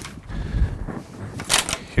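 Handling noise as a shade headrail is moved on the table: a low bump about half a second in, then a short sharp rustle about a second and a half in.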